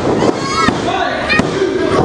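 Referee's hand slapping the wrestling ring canvas twice, about 0.7 s apart, counting a pinfall, over a crowd shouting.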